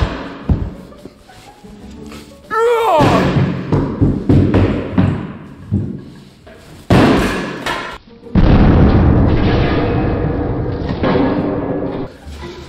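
Background music with a couple of heavy thuds: a 16-kilogram kettlebell dropped onto a slab of bulletproof glass.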